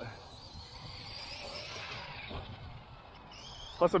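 Losi LST 3XLE electric RC monster truck running on 6S, heard from a distance as a faint, steady whir of its brushless motor and drivetrain. A short rising whine comes near the end as the throttle is applied.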